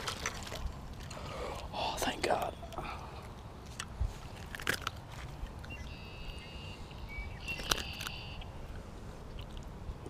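Handling noise as a hooked largemouth bass is splashed to the bank and lifted by hand: scattered clicks, knocks and rustles of rod, reel and hands, with a splash at the start.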